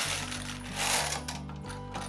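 Loose metal screws tipping out of a plastic toy dump truck's bin and spilling onto carpet: a jingling clatter, loudest about a second in, then fading.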